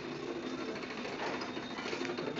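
Metal-railed hospital crib being wheeled along, its casters and frame giving a steady mechanical rattle.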